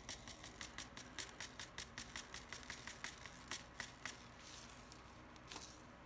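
Faint, quick light ticks of a finger tapping a paper seed packet to shake seeds out, with a little paper rustle; the ticks come several a second and thin out after about four seconds.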